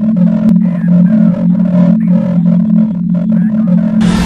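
Intro of an electronic track: a loud, steady low synth drone that pulses slightly, with a warbling, voice-like sample over it. The full arrangement with deep bass comes in right at the end.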